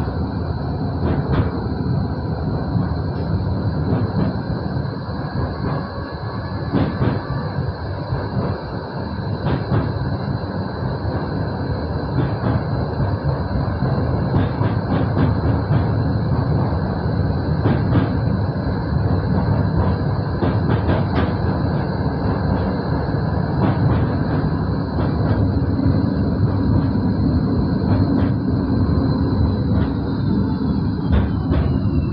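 Moderus Gamma LF 03 AC low-floor tram running along street track, heard from the front cab: a steady rumble of wheels on rails with scattered clicks and a steady high whine, which starts to fall in pitch near the end.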